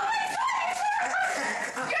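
Teenagers laughing in high voices, with a shout of "party!" near the end.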